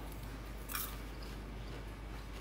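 A man chewing a piece of popcorn: faint crunching, with one slightly louder crunch just under a second in.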